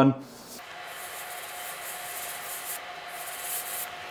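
Can of compressed air spraying through its nozzle straw, blowing dust out of a night-vision lens assembly: a steady hiss of about three seconds that eases briefly near the end.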